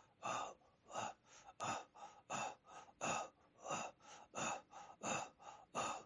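Rhythmic breath-chanting of a Sufi dhikr: short, forced breathy exhalations about three times a second, alternating stronger and weaker, with no sung pitch, soft beside the hymn singing.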